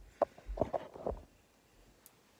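Camera handling noise: a sharp click, then a few dull knocks and rubs as the camera is moved and set in place, all within the first second or so.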